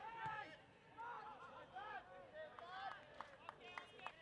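Faint, distant shouting from footballers on the pitch: a string of short calls that rise and fall in pitch, with a few light knocks among them.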